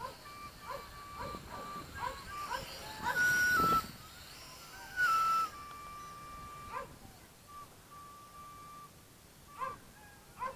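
MJX X400 mini quadcopter's motors whining at a distance: a thin steady tone that jumps up and down in pitch in steps as the throttle changes. Short bird chirps are scattered throughout. Two brief loud rushes of noise come about three and five seconds in.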